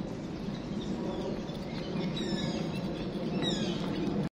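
Birds chirping outdoors, several quick high calls sliding downward in the second half, over a steady low background rumble.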